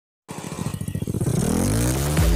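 An engine revving up as the sound effect of a logo intro: quick firing pulses start about a quarter second in, speed up, and merge into a rising hum that levels off near the end.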